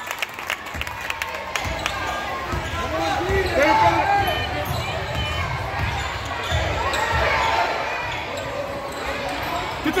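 Basketball bouncing on a hardwood gym floor as it is dribbled up the court, with sneakers squeaking in short chirps, loudest right at the end, and spectators talking in the background.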